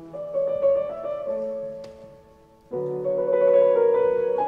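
Background piano music: slow, held chords, a new chord about every second and a half.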